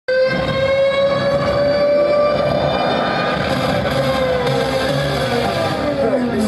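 A long, loud horn-like tone with a rich stack of overtones, held steady and then gliding downward in pitch over the last second or so: the opening sound of a dance music track.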